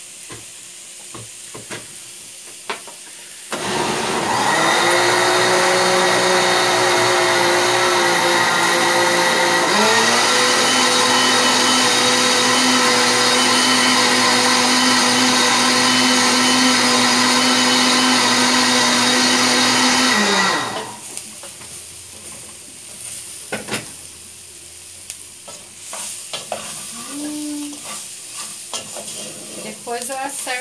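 Electric food processor motor running steadily for about seventeen seconds, starting about three and a half seconds in; its pitch drops a little partway through and it stops about twenty seconds in. Before and after it, sausage and onion sizzle in the pot while a wooden spoon stirs.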